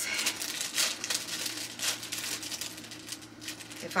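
Clear plastic packaging bag crinkling and crackling in irregular quick bursts as it is handled and worked open.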